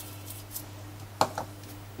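Small handling sounds from the cook's hands and kitchen items: a few faint ticks and one sharp click a little past a second in, over a steady low hum.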